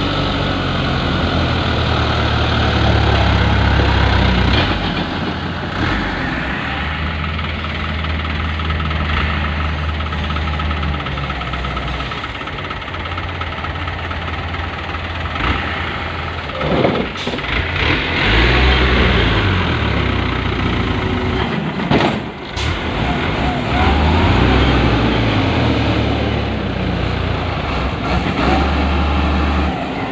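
Diesel engines of a Hino dump truck and a Hidromek motor grader working hard, their deep running note swelling and easing as the grader pushes the truck stuck in the mud. A couple of short sharp noises come past the halfway point.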